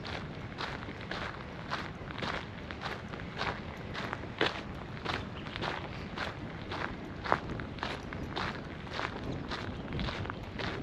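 Footsteps of a person walking at an even pace on a compacted fine-gravel path, about two steps a second.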